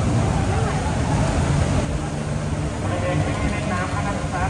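Outdoor crowd ambience: scattered voices over a steady low rumble.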